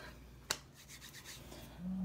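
Hands handling objects: one sharp click about half a second in, then faint light clicks and rubbing.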